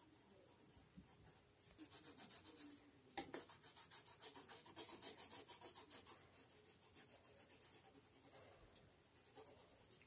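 Coloured pencil shading back and forth on sketchbook paper in quick scratchy strokes, about five a second, with a light tap a little after three seconds in; the strokes grow fainter after about six seconds.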